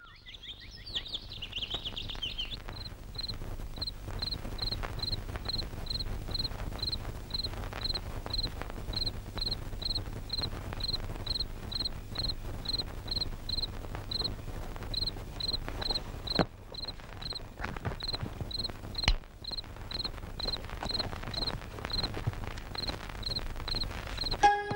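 Night ambience of a cricket chirping steadily, about two high chirps a second, over a low steady hum. There is brief high twittering in the first two seconds, and two sharp knocks later on.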